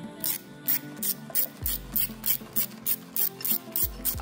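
Socket ratchet wrench driving a bracket bolt, its pawl rasping in quick, even strokes of about three a second, over background music.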